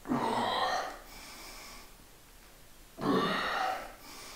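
A man breathing out hard twice, each breath lasting under a second and about three seconds apart: effortful exhalations as he presses heavy dumbbells up from the floor.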